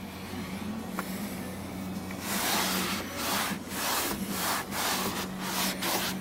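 Microfiber towel rubbing over a perforated vinyl door panel, wiping off cleaner in a run of back-and-forth strokes, about two a second, that grow louder from about two seconds in.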